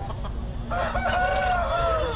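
A rooster crowing: one long crow starting under a second in, dropping slightly in pitch as it ends.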